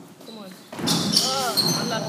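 Basketball rebound scramble on an indoor court: after a quiet start, about three-quarters of a second in, voices break out shouting and sneakers squeak sharply on the hall floor as players chase the ball.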